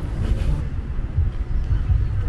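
Wind buffeting the microphone: a low, uneven rumble with no clear tone.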